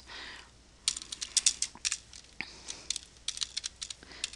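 Typing on a computer keyboard: a quick, irregular run of key clicks starting about a second in.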